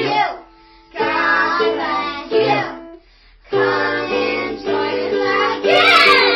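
Children singing a song in short phrases with brief pauses between them, over instrumental backing.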